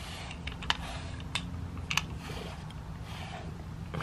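Domestic cat purring steadily, a low rumble, while being brushed, with a few light clicks and scratches from the brush and handling.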